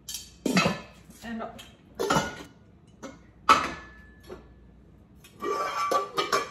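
Cookware being handled: a glass pot lid and nonstick pots knock and clink a few times. The sharpest clink, about three and a half seconds in, rings on for about a second.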